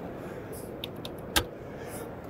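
Steady background noise of a busy exhibition hall, with a faint tick a little under a second in and one sharp click about a second and a half in, as a computer keyboard and mouse are worked.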